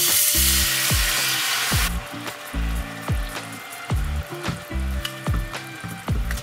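Coconut milk hitting a hot pan and sizzling loudly for about the first two seconds, then dying down to a softer sizzle. Background music with a steady beat plays under it.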